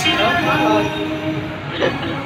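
Music with a singing voice played loud through a JBL Boombox portable Bluetooth speaker, with held notes and a gliding vocal line.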